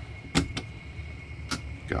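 Two sharp clicks about a second apart from handling a battery-monitor circuit board and its ground wire lug as the board is set onto a stack of boards, over a steady low background hum.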